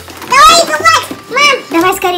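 A young child's voice: two short utterances, the second briefer than the first.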